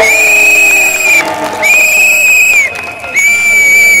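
A whistle blown in three long, steady blasts of about a second each, with short gaps between them.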